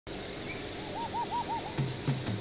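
A bird calls a quick run of about five rising-and-falling whistled notes over a steady background hiss. Low notes stepping downward begin near the end.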